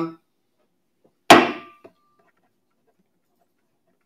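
Auctioneer's gavel struck once on the rostrum, knocking down the lot as sold: a single sharp knock about a second in that rings briefly.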